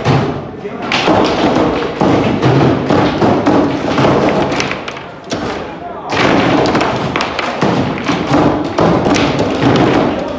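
Foosball table in play: rapid, irregular knocks as the plastic figures strike the ball and the rods bang against the table, with a short lull past the midpoint.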